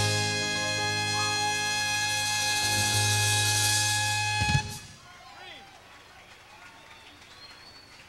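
A live band holds the sustained final chord of a song, and a sharp drum hit about four and a half seconds in cuts it off. Only faint room noise follows.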